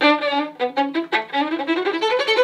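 Violin played with a sautillé bow stroke: a quick run of short, bounced notes, each clearly articulated, climbing in pitch in the second half.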